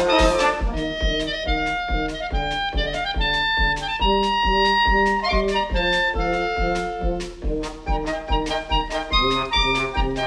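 Wind-band music: clarinets and brass play a melody over a steady drum beat, with cymbal hits near the start.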